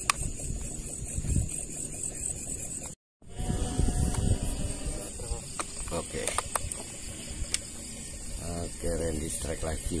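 Outdoor night ambience with a steady high-pitched hiss and low rumble, and a few short bits of muffled voice near the end. The sound cuts out completely for a moment about three seconds in, at an edit.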